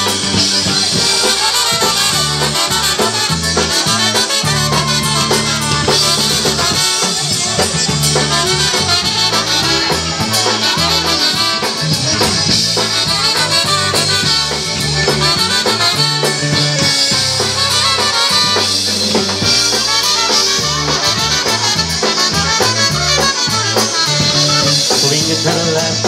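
Live polka band playing an instrumental break: trumpet, concertina and accordion over drum kit and bass, with a steady dance beat.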